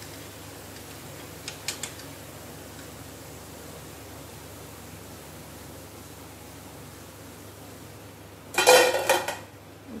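Wire spider skimmer clinking lightly against a steel kadhai as crisp-fried idli-batter bondas are lifted from the oil. Near the end comes a loud rattling clatter of the hard, crisp bondas knocking against the metal skimmer, lasting under a second: the sound of them being fried super crispy.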